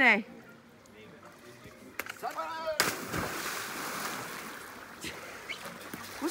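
A person dives into a swimming pool with a sudden splash about three seconds in, followed by a couple of seconds of churning water as they swim away.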